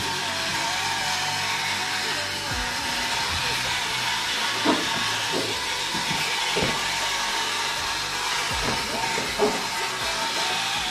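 A steady rushing noise throughout, with a few light knocks and taps around the middle and near the end as the plastic front bumper cover and fender trim are pressed and handled by hand.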